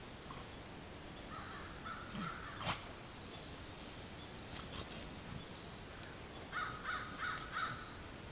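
Steady high-pitched drone of summer insects, with a few short harsh calls about two seconds in and four more in quick succession near the end, and a single sharp click just before three seconds in.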